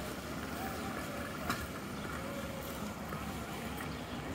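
Outdoor ambience: a steady low rumble of wind on the microphone with faint distant voices, and a single sharp click about one and a half seconds in.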